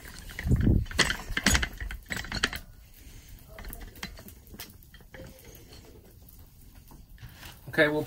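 Handling knocks, thuds and clicks as a phone camera is picked up, moved and set down, loudest in the first two or three seconds, then a quieter stretch with a few faint ticks.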